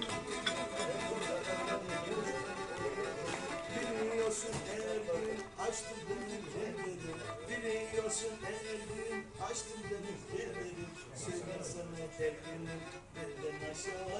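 Black Sea kemençe, a small bowed three-string fiddle, playing a folk melody without singing.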